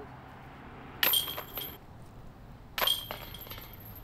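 Disc golf basket chains jingling as two putted discs strike them, about two seconds apart: a sharp metallic rattle about a second in and another near three seconds, each ringing briefly. These are putts caught in the chains.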